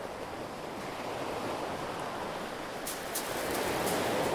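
Sea surf washing onto the shore as a steady rush of noise, swelling slightly towards the end, with a few brief crisp clicks in the last second.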